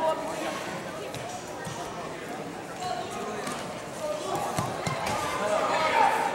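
Gym ambience at a wrestling match: indistinct shouting from coaches and spectators, with a few dull thuds of wrestlers' feet and bodies on the mat.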